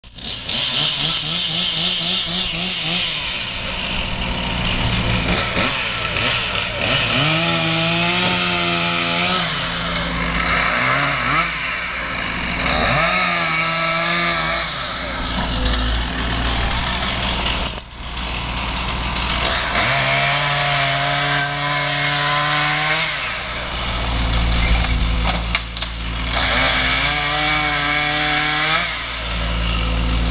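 A two-stroke chainsaw runs throughout. Four times it is throttled up, its pitch rising and holding for a couple of seconds under cutting load, then falling back to a lower running note between cuts.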